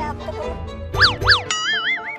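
Cartoon-style comedy sound effects over background music: two quick up-and-down pitch swoops about a second in, then a wavering, warbling tone near the end.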